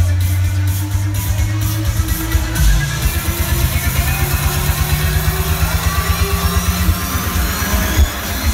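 Electronic dance music from a live DJ set over a festival sound system, recorded from within the crowd. A heavy bass beat drops out about two and a half seconds in, and a slowly rising build-up follows.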